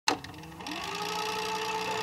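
A sharp click, then a steady mechanical whirring hum with a few held tones.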